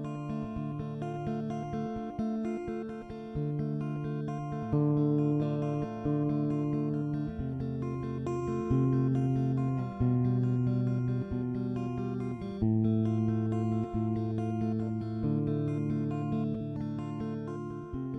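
Film score: a slow piece on plucked acoustic guitar, notes and chords struck one after another and left to ring and fade.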